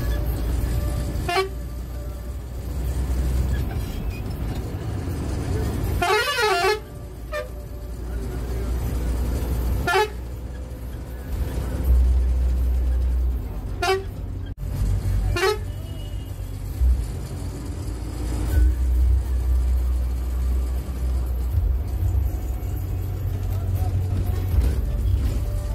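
Private route bus's diesel engine running steadily on the road, heard from the cab, with the horn sounded in about five short toots; one about six seconds in is longer, with a wavering pitch.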